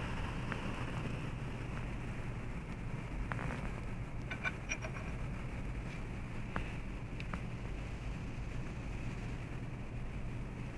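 Steady low background hum, with a few faint light clicks of the compressor's broken metal connecting rod being handled, a little after the third second and again around the fifth to seventh.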